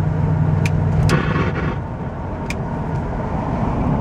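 Engine and road noise inside the cabin of a 1968 Camaro with a 327 V8 and two-speed Powerglide, under way, with a low steady hum. A few sharp clicks and a brief higher-pitched burst come about a second in.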